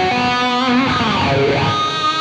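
Electric guitar played through a Carl Martin Blue Ranger pedal, a lick of sustained notes with a pitch bend around the middle, its tone carrying a pronounced mid hump.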